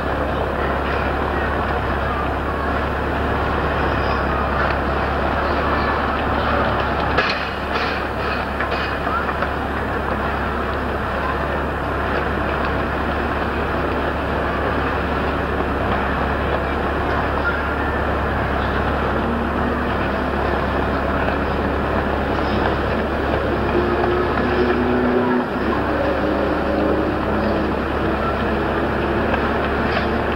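Steady outdoor background rumble and hiss with a constant deep hum underneath, and a short clatter of knocks about seven seconds in.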